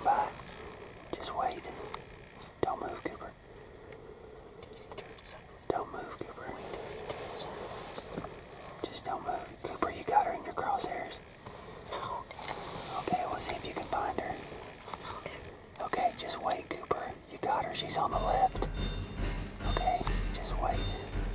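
Hushed whispering voices in short, scattered phrases; background music comes in near the end.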